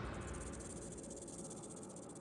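The tail of a loud sound fades out in the first moments, leaving faint, rapid, high-pitched chirring of crickets.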